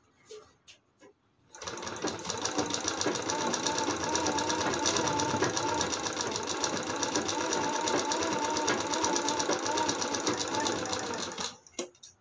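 Usha sewing machine running at speed, stitching a seam in one steady, rapid run of stitches. It starts about a second and a half in after a few faint clicks, and stops shortly before the end.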